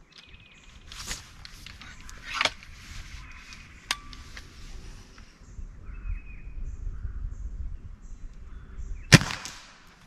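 Suppressed .30 calibre Hatsan Mod 130 QE break-barrel air rifle fired once, a single sharp shot about nine seconds in and the loudest sound here. Before it come a few clicks and clacks of the rifle being handled and brought up to aim.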